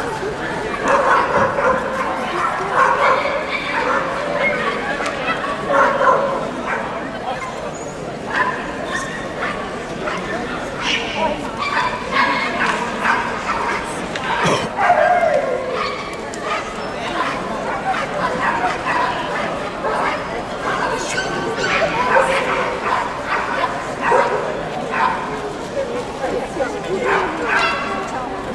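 Dogs yipping and barking at intervals over the steady chatter of a crowd in a large hall.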